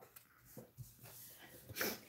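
Mostly quiet, with faint handling of cardstock and craft scissors on a desk, and a short hiss a little before the end.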